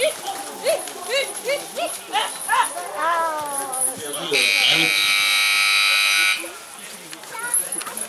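Short repeated calls from a voice, then about four seconds in an electric buzzer sounds steadily for about two seconds and stops: the signal that ends a ranch sorting run.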